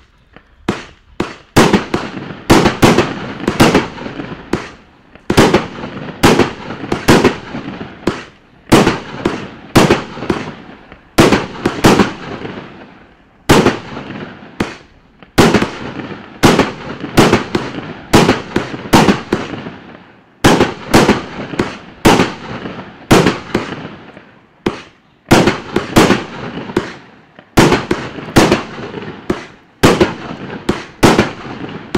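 A 49-shot, 30 mm calibre Brocade War 49 firework cake firing: sharp shots in quick succession, about one to two a second with short gaps every few seconds. Each shot has a brief fading tail as the shell bursts.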